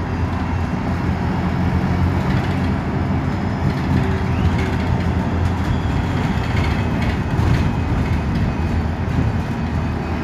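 Single-deck London bus heard from inside the saloon while under way: a steady low engine drone with road noise, shifting slightly in pitch, and a short spell of rattling knocks about seven seconds in.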